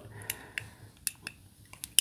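Several small, sharp clicks from pressing the input button on the aune Flamingo's aluminium remote to cycle the DAC's inputs.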